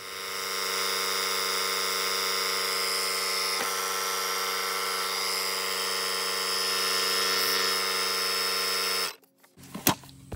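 Air compressor built into a Stanley FatMax PowerIt 1000A jump starter, running with a steady buzzing hum as it inflates a car tyre through a hose on the valve stem, then stopping abruptly about nine seconds in.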